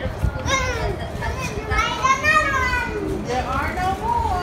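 A toddler's high-pitched, wordless vocalizing: short calls, the longest and loudest about two seconds in.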